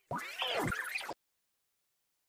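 A cat meowing once, about a second long, cut off abruptly.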